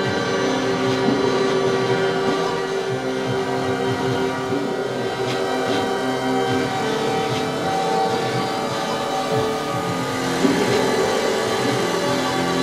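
Experimental electronic noise-ambient music: a dense, steady drone of many layered sustained tones, with faint scattered clicks.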